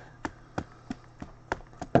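A run of about six light, sharp taps, roughly three a second, from a trading card and its rigid plastic holder being handled with gloved hands.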